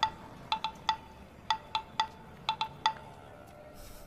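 Phone keypad tones: about ten short beeps, all at the same pitch, in irregular groups over three seconds, as digits are tapped in.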